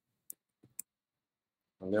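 Computer keyboard keys clicking: a few quick, separate keystrokes in the first second as a word is typed.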